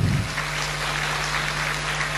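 A large audience applauding steadily, with a steady low hum underneath.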